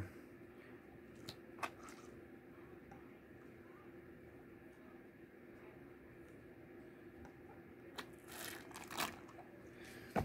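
Quiet handling sounds over a faint steady hum: a few soft plastic clicks from a snuffer bottle being squeezed in a gold pan about a second and a half in, then a short splash and swish of water in the pan near the end as it is moved.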